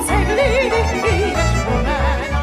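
A woman singing an operetta song with wide vibrato, accompanied by a string band of violins and bass playing a steady pulsing beat.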